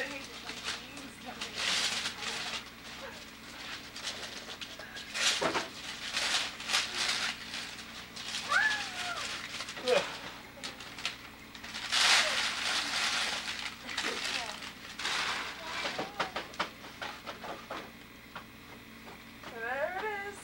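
Wrapping paper rustling and tearing in repeated irregular bursts as Christmas presents are unwrapped, with a few short high voice-like calls in between.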